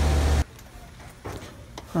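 A steady low machine hum with hiss that cuts off abruptly about half a second in. It is followed by quiet background with a couple of faint clicks.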